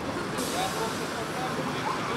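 Outdoor street background: a steady hiss of passing traffic that comes in about half a second in, with faint voices under it.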